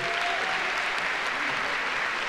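Large audience applauding steadily, an even clatter of many hands clapping.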